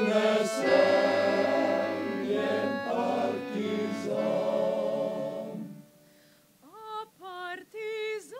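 Men's choir singing a sustained, many-voiced phrase that ends about six seconds in. After a short pause, a single solo voice with wide vibrato comes in near the end in short, rising phrases.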